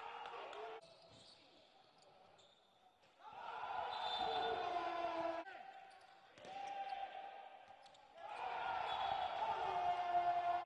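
Handball game sound on an indoor court: the ball bouncing and players calling out, heard in three short stretches that each cut off abruptly.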